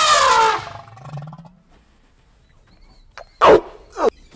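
Asian elephant trumpeting: a loud call that falls in pitch over the first half-second, then a short, sharp call that drops in pitch about three and a half seconds in.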